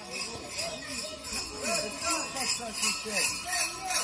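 Bells on New Year mummers' costumes jingling in a steady quick rhythm as the troupe shakes them, with voices underneath.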